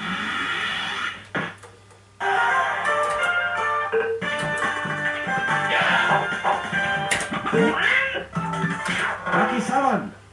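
Golden Dragon fruit machine playing its electronic tunes, with stacked steady tones and rising and falling pitch sweeps. The tune breaks off for about a second, a second and a half in.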